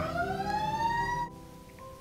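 A siren-like wail rising steadily in pitch, cut off abruptly about a second in, leaving a faint steady tone.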